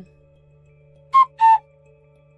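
Two-note whistle-like sound effect: a short high note about a second in, then a slightly lower, longer one, over a soft steady background-music drone.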